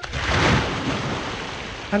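One large water splash, a body plunging into the sea: a sudden rush of water noise that swells within the first half-second and slowly dies away.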